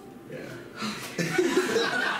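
Audience laughing, swelling about a second in.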